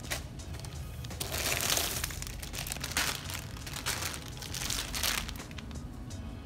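Clear plastic packaging crinkling in several rustling bursts as a rolled tube of cross-stitch fabric is handled.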